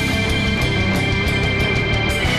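Modern metal band playing live: distorted guitars, bass and drums in a dense, steady wall of sound, with fast drum hits under a held high note.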